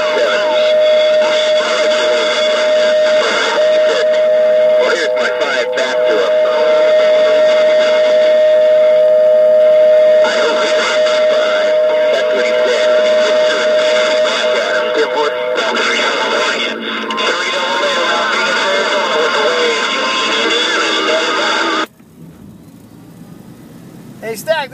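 CB radio receiving a strong long-distance transmission through its speaker: garbled voice and music over noise, with a steady whistle through the first half. The signal cuts out suddenly about two seconds before the end, leaving faint static.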